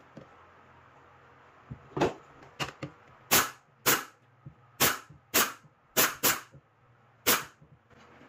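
About ten sharp wooden clacks come at irregular half-second intervals, starting about two seconds in. They are the plywood parts of a homemade saw-lift lever and pivot knocking together as it is worked by hand.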